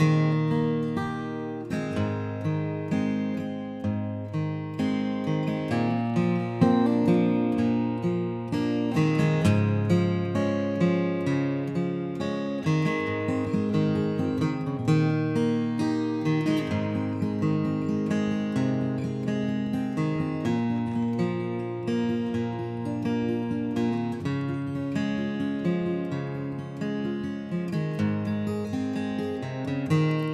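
Capoed Taylor acoustic guitar picked and strummed with a flatpick, playing an instrumental break of the song.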